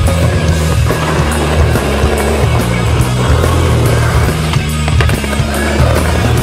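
Skateboard wheels rolling continuously over rough concrete, with a couple of sharp board knocks near the end, mixed under music with a prominent stepping bass line.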